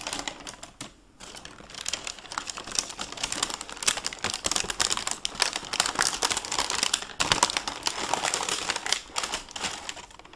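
Tissue paper crinkling and rustling as it is handled and folded back, a dense run of small crackles with a brief lull about a second in.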